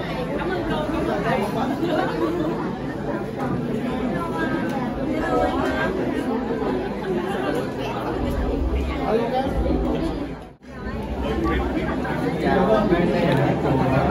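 Indistinct chatter of several people talking at once, with no single clear voice. The sound drops out for a moment about ten and a half seconds in.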